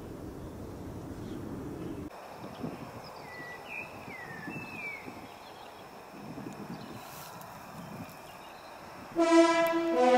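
Outdoor ambience with a low rumble of wind on the microphone. It drops off abruptly about two seconds in to a quieter background with a few brief falling chirps. Near the end, loud brass music starts with held horn-like chords.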